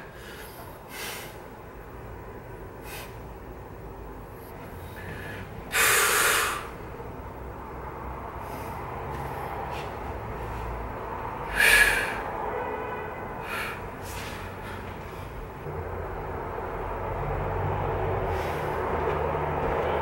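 A man breathing out sharply twice, about six seconds in and again near twelve seconds, with a few faint softer breaths over low steady room noise.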